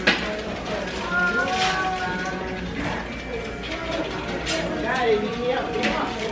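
Indistinct background voices and music, with a few sharp clicks.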